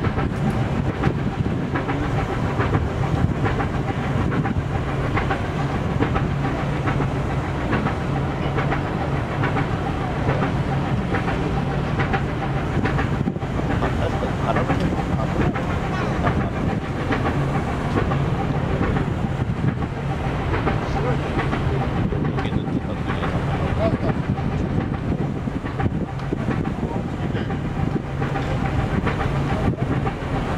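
A large engine running steadily: a continuous low drone with a faint constant higher tone over it.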